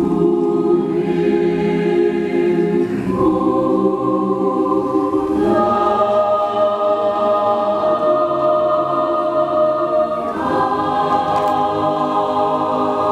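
Mixed choir singing sustained, slow-moving chords, with the harmony shifting to a new chord about three seconds in, again around the middle, and once more near the end.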